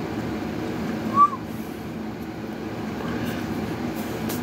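Steady low rumbling background noise, with one short chirp-like squeak about a second in that rises and then falls in pitch.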